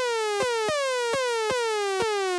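Zebra HZ software synth playing a bright sawtooth tone in quick repeated notes, about five in two seconds. Each note starts with a click and glides downward in pitch: envelope 2 is modulating the oscillator's tune through the modulation matrix.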